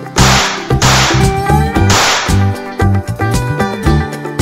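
Upbeat background music with guitar, overlaid in the first two and a half seconds by three short whoosh sound effects, each about half a second long.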